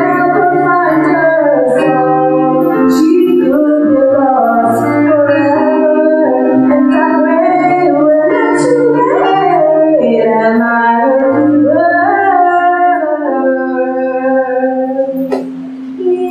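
A woman sings a gospel solo through a microphone over sustained electronic organ chords. Near the end the music drops away briefly, with a single click.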